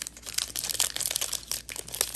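Foil trading-card pack wrapper crinkling as it is handled and torn open at the top, a dense run of quick, irregular crackles.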